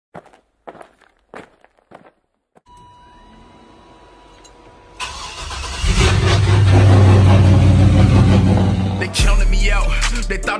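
Intro sound effect of a car engine starting suddenly about halfway through and running loud and deep for about four seconds, after a few short sharp hits and a faint steady tone. Music starts near the end.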